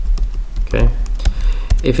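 Typing on a computer keyboard: a quick run of key clicks as a line of code is finished and Enter is pressed.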